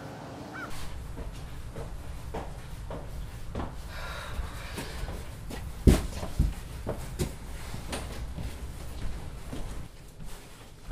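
Footsteps and the knocks of cardboard boxes being carried, with two louder thumps close together about six seconds in.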